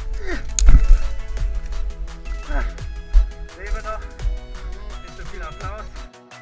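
Background music with a steady beat. Over it a voice cries out several times, each cry falling in pitch, and there is a loud thump under a second in.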